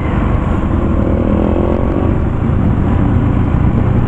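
Bajaj Pulsar NS200 motorcycle engine running at road speed under a steady rumble of wind on a helmet-mounted microphone; a faint engine note rises briefly between one and two seconds in.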